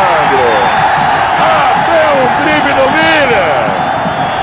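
Stadium crowd noise from the stands: many voices shouting and chanting at once over a steady roar.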